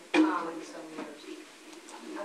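A short voiced sound from a person, a brief hum-like utterance that starts suddenly just after the start and fades within about half a second, followed by low room murmur.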